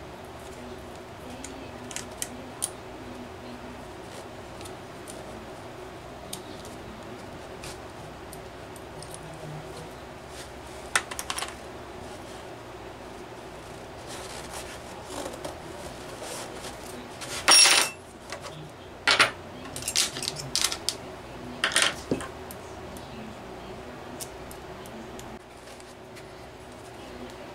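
Metal parts of an OS FF-320 Pegasus four-cylinder model engine clinking and tapping as it is taken apart by hand. A few light clicks come early, then a louder cluster of clinks a little past the middle, the loudest with a short metallic ring.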